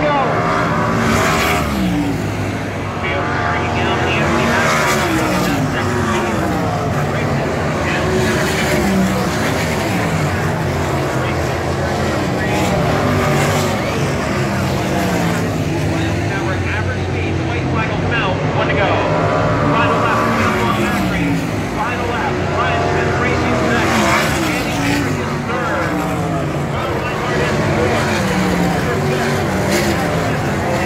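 A field of 410 sprint cars running laps on a dirt oval, several engines heard at once. Their pitch keeps falling and rising as the cars pass and go through the turns.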